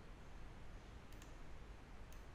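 Computer mouse button clicking: a quick pair of clicks about a second in, over a faint steady hiss.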